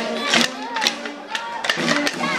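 A street band with saxophone plays a lively dance tune over a steady beat of about two strokes a second, with crowd voices mixed in.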